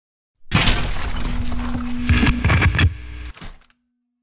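Logo intro sting: a short burst of music and sound effects with a run of sharp hits, starting suddenly about half a second in and cutting off just before four seconds.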